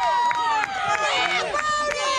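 Many high-pitched voices yelling and screaming at once in long, overlapping, excited shouts: cheering as runs score on an inside-the-park grand slam.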